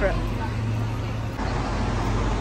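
Steady road traffic noise with a low, even engine drone underneath.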